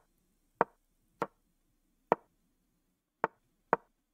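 Five short wooden clicks at uneven intervals: the piece-move sounds of a fast online chess game as both sides play their moves, with quiet between them.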